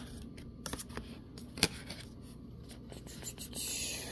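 Tarot cards being handled on a table: a few light clicks and taps as cards are picked from the spread, the sharpest about a second and a half in, then a soft scraping slide of a card near the end.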